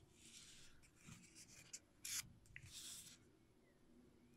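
Faint rustle and rub of paper as a page of a small handmade book is turned by hand, in a few soft swishes, the sharpest about two seconds in.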